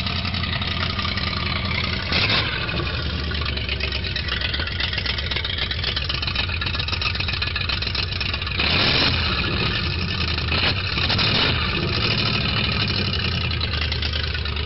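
An engine idling steadily, with brief louder bursts of noise about two seconds in and several more between about eight and a half and eleven and a half seconds in.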